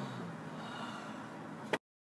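Low steady hum inside a car cabin that fades out just after the start, leaving faint breathy background noise. Near the end a click, then the recording cuts to dead silence.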